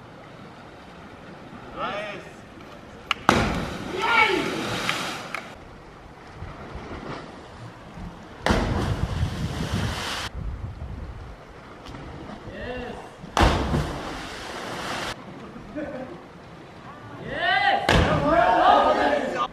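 Cliff divers hitting the sea below a high rock ledge: three short bursts of rushing splash noise. Distant shouts and cheers come from the group on the cliff.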